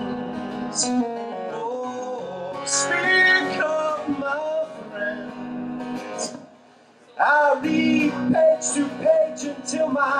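Live solo performance: a strummed steel-string acoustic guitar with a man singing over it. About two-thirds of the way through the sound drops almost away for a moment, then guitar and voice come back in strongly.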